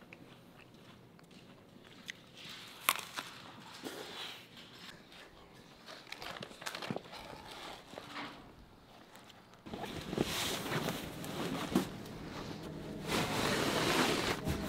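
Quiet handling sounds: a few scattered clicks and knocks, then from about ten seconds in a louder, steady rustle and clatter as hunting gear is handled.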